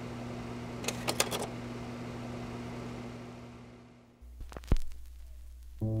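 A steady low hum with a few sharp clicks about a second in, fading out over the next few seconds. Then a lower drone and a loud click, and music with a hummed voice begins near the end.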